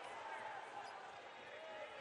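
Faint, steady background sound of a basketball arena during a free throw, with distant voices faintly audible.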